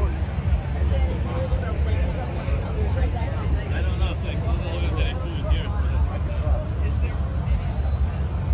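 Indistinct voices of people talking, too unclear to make out, over a constant low rumble.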